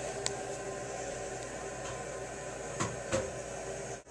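Steady low background hum, broken by one sharp click near the start and two dull knocks about three seconds in.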